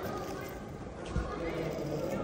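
Footsteps on a hard terminal floor over a murmur of faint voices, with one low thump about a second in.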